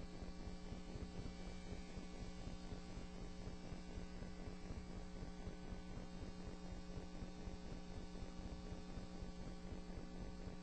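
Steady mains hum with a low hiss on the courtroom audio feed, unchanging throughout.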